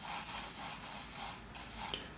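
Graphite pencil drawing on paper: soft scratching in several short strokes as lines are sketched.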